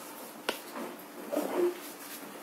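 Chalk striking a chalkboard with a sharp click, then scraping along the board in short strokes as a curved line is drawn, loudest near the end.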